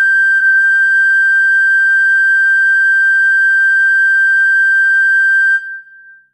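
Recorder holding one long, steady high note, briefly re-tongued about half a second in, then fading out near the end.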